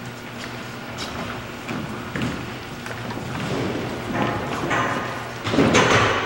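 Large dance-studio room sound: scattered light thuds and taps of dancers' feet on the floor, faint murmuring voices and a steady low hum. A voice starts up close near the end.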